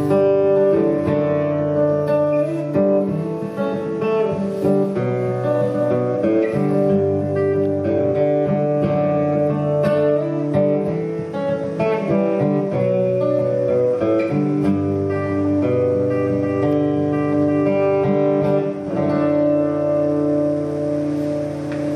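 Solo acoustic guitar strummed in an instrumental passage, its chords ringing and changing every second or two.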